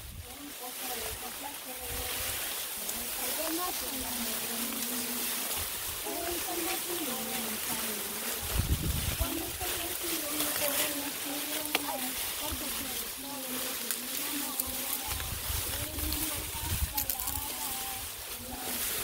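Tall grass and cane stalks rustling and brushing as people push through them on foot, with faint distant voices talking throughout. Low rumbles come in about halfway through and again near the end.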